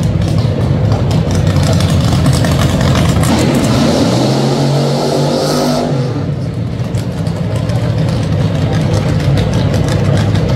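Drag-racing dragster engines running at the starting line, a steady deep rumble. About four to six seconds in, one revs louder in a rising-then-falling run with a hiss on top, which cuts off sharply.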